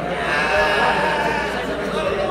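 A person's drawn-out, wavering vocal sound, with no words, lasting about a second and a half over the background murmur of the hall.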